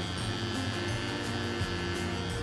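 A cordless T-blade hair clipper running with a steady electric hum, under upbeat background music.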